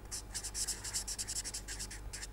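Marker pen scratching on paper in many quick short strokes as a word is handwritten.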